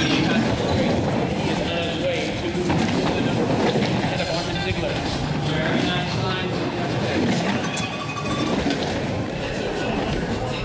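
A luge sled running fast down the ice track, a continuous rumbling rush, with spectators shouting and cheering over it.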